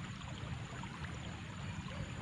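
Steady, low outdoor background noise: an even hiss with a faint low rumble and no distinct events.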